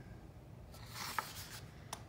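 Paper rustling softly as a coloring-book page is turned by hand, swelling and fading about a second in, with a couple of light clicks.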